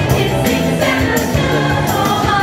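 Show choir singing in unison over instrumental accompaniment.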